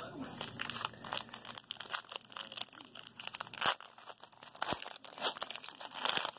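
Foil wrapper of a trading-card pack crinkling and tearing as it is worked open by hand, a dense run of irregular crackles.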